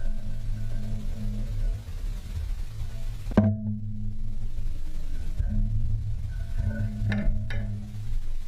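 Background music of low, sustained bass notes, with a sharp struck note about three and a half seconds in and two more near the end.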